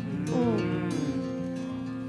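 Soft background music under one long, drawn-out 'ừ' from a person's voice, its pitch arching gently up and down.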